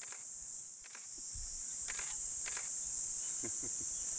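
Steady, high-pitched insect chorus, a continuous shrill drone, with a few faint clicks on top.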